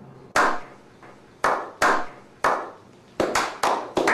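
A small group slow-clapping: single claps spaced about a second apart, each with a short echo, quickening into faster applause near the end.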